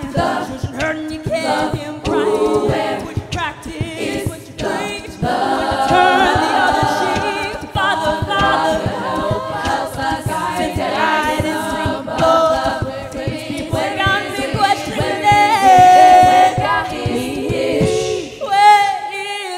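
All-female a cappella group singing in close harmony through stage microphones, with vocal percussion keeping a steady beat. One voice holds a long note near the end.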